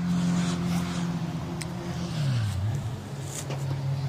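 New Holland T4.95 tractor's diesel engine running steadily. About two seconds in, its speed drops, and it settles at a lower, steady idle.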